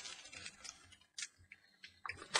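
Near silence with a few faint, irregular clicks and soft rustling as a fabric mat is handled and lifted away.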